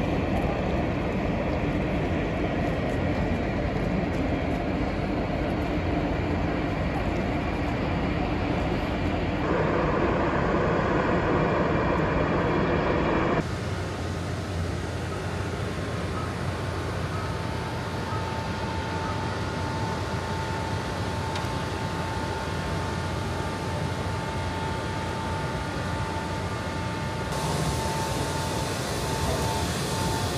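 Steady low drone of dockside and ship machinery, changing abruptly about a third of the way in; a steady high-pitched hum joins a few seconds later and holds.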